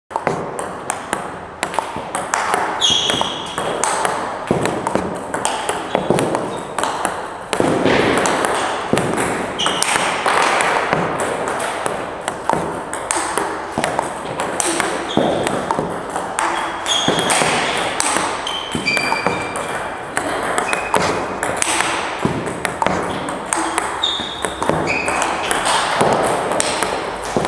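Table tennis multiball drill: a rapid, continuous run of clicks as plastic balls are hit with rubber paddles and bounce on the table, several a second, with short high squeaks now and then.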